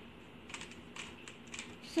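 Plastic Rubik's cube being twisted by hand, its layers clicking as they turn: a string of light, irregular clicks, a few each second.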